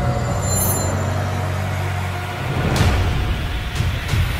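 Cinematic trailer sound design under a title reveal: a deep low drone fading away, then a booming hit about three seconds in and another near the end.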